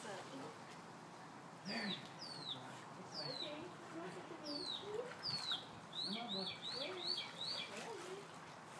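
A small bird peeping: short high chirps that each fall in pitch, a few spaced about a second apart, then a quick run of about five near the end.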